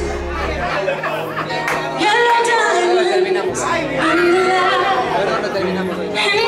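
A song with a vocal playing loud in a large room, with crowd chatter under it. The deep bass drops out just under a second in, and the voice comes back in louder, with long held notes, from about two seconds in.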